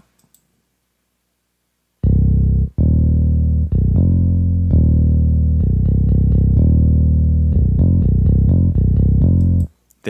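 Virtual bass guitar from the Xpand2 software instrument, playing a soloed MIDI bass line made from a converted acoustic guitar part. It comes in about two seconds in as a line of low held notes, turns to short repeated notes near the end, and cuts off just before the end.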